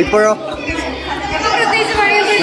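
Speech only: women talking, with chatter from other people in a large hall behind them.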